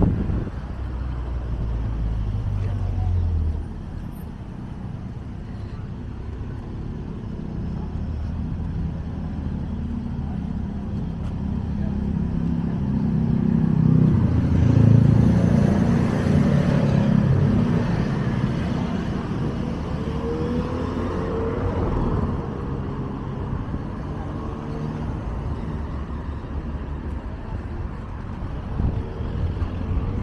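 Road traffic on a town street: cars go by steadily, with one vehicle passing loudest around halfway through.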